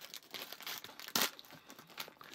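Foil-lined candy wrapper crinkling in irregular crackles as it is pulled open by hand at its seam, with one sharper crackle about a second in.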